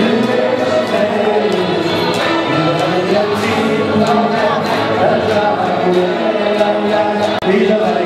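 Live electric guitar with a group of voices singing along and hands clapping to the beat.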